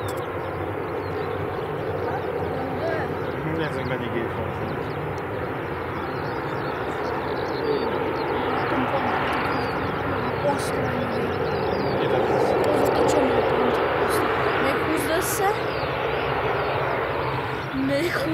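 Bombardier Dash 8-400 (Q400) turboprop engines running as the airliner rolls out along the runway after touchdown: a steady propeller drone with a low hum, getting louder past the middle. Voices chat over it.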